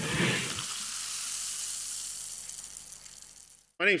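Intro sound effect for an animated logo: a low hit, then a steady airy hiss that slowly fades away over about three seconds.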